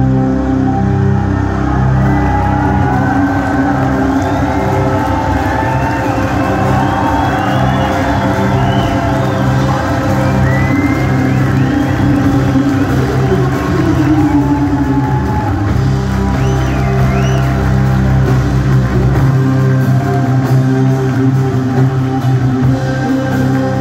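Live band music with long sustained synthesizer chords over a low drone and little or no drumming, with audience whoops and cheers sounding over it.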